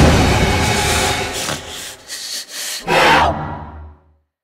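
Horror-trailer jump-scare sound effect: a sudden, loud, harsh grating noise, then a second loud hit with a deep boom about three seconds in, fading out just before the end.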